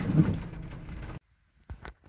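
Rain on a car's windshield and roof with cabin noise, cutting off abruptly about a second in, followed by a few short clicks.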